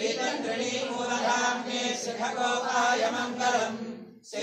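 Devotional chanting of a mantra: a voice intoning in one long unbroken phrase that breaks off near the end.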